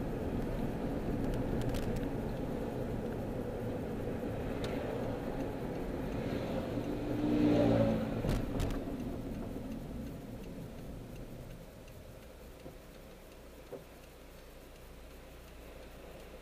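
Road and engine noise inside a moving Honda car, a steady low rumble with a louder swell about halfway through. It grows quieter over the last few seconds as the car slows.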